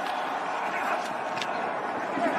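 Stadium ambience of a live football play: a steady wash of crowd-like noise, with a couple of brief sharp ticks.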